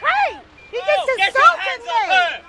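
People shouting, loud and raised, with the words not made out.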